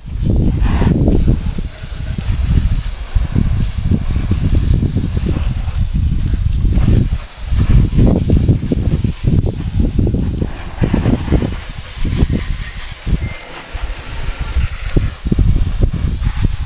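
Water spraying from a garden hose nozzle onto a motorcycle, a steady hiss, under an uneven low rumble that rises and falls throughout.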